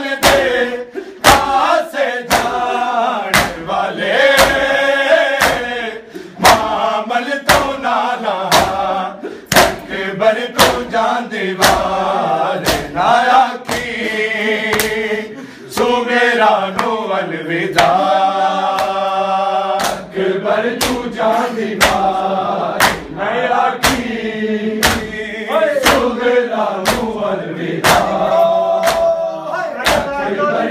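Men's voices chanting a noha (lament) over a steady beat of sharp slaps, as the mourners strike their bare chests with open hands in matam.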